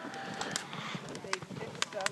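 Faint voices in the background, broken by a few sharp snaps or crunches spread across the two seconds.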